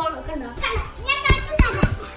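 A young child's voice chattering, with a few dull thumps in the second half.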